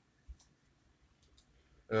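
A short sharp click about a third of a second in and two fainter clicks a second later, in an otherwise quiet pause; a man's voice starts just at the end.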